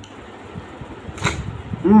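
Close-miked eating sounds of a person chewing a mouthful of snail meat, soft wet mouth noises with one sharper click a little past halfway, ending in a hummed 'hmm'.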